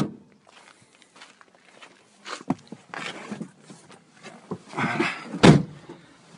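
A car's boot lid shut with a sharp bang at the start, then footsteps and handling noises, and a heavier, deeper thump of a car door closing about five and a half seconds in.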